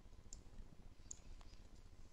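Near silence with a few faint computer clicks, mouse and keyboard, as a value is typed into a software field.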